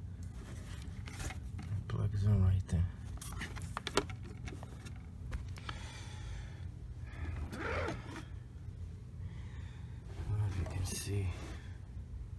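Sharp plastic clicks and knocks as a robot vacuum's plastic charging dock is handled and set down, over a steady low hum. Short stretches of indistinct voice come in and out.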